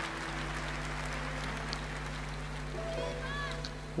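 Quiet live concert music: a low sustained chord held steadily under an even hiss of crowd noise. Near the end, a few faint short sliding notes come in above it.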